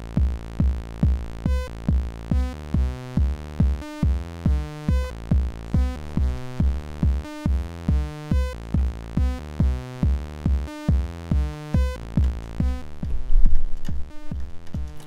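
Eurorack modular synth patch running through a Cosmotronic Messor compressor: a steady low kick-like pulse about twice a second under pitched synth notes that change from hit to hit, with the compressor dipping the gain on each pulse. Near the end a sudden, much louder low burst cuts in for about a second.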